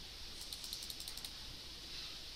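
Computer keyboard being typed on: a quick, faint run of about eight key clicks in the first half, over a low steady room hiss.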